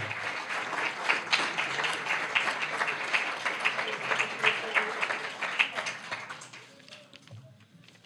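Audience applauding, a dense patter of clapping hands that fades away about two-thirds of the way through.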